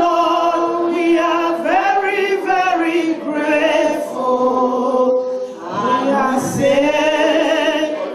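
Two women singing together into handheld microphones, holding long, gliding sung notes through a PA.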